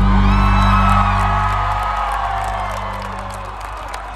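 A live rock band's final chord rings out and fades away, while people in the crowd whoop and cheer over it.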